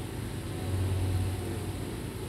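A steady low rumble with hiss, swelling slightly for a moment about halfway through; no speech or music.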